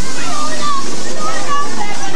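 Children's voices calling out, their pitch sliding up and down, over a steady background hiss.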